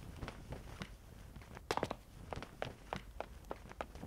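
Faint footsteps sound effect: quick, uneven steps, about three a second, with a louder cluster of hits a little before the halfway point.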